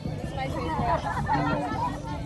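Speech: several people's voices talking over one another.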